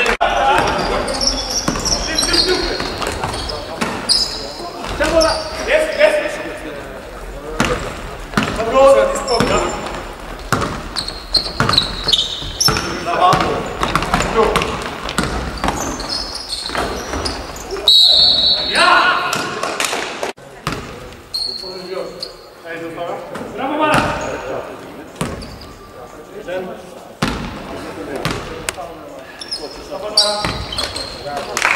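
Live court sound of an indoor basketball game: a basketball bouncing on a wooden floor, with sneakers squeaking in short high squeaks and players calling out indistinctly, echoing in a large sports hall.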